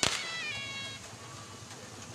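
A dog gives a high-pitched yelp while fighting another dog, lasting about a second and falling slightly in pitch. A sharp crack sounds at its start.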